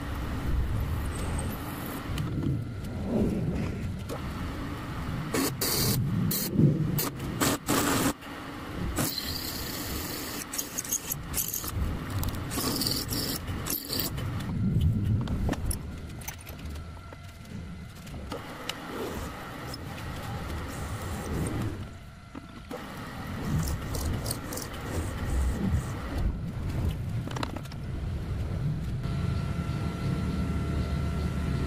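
Milling machine spindle running while a drill bit cuts into a metal workpiece, with repeated scraping and metallic clatter from chips and handling of the part.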